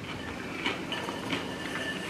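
Someone chewing crunchy fried calamari, with a few soft crunches over a steady background noise.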